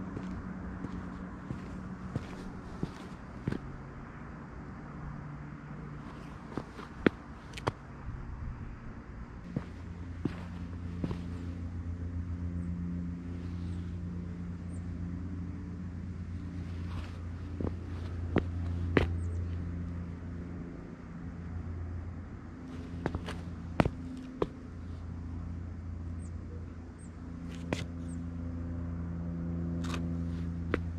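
Sneaker footsteps tapping and scuffing on a concrete driveway in scattered, irregular steps, over a steady low motor hum.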